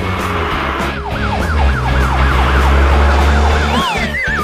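Cartoon sound effects over bass-heavy background music. From about a second in, a quick electronic whoop rises over and over, about four times a second, like a yelp siren. Near the end it gives way to a wobbling whistle that slides down in pitch.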